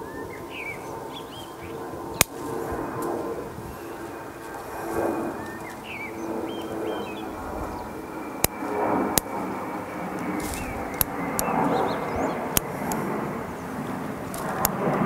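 Bonsai scissors snipping shoots from a small maple's crown: a handful of sharp, irregularly spaced snips, with several close together from about eight to thirteen seconds in.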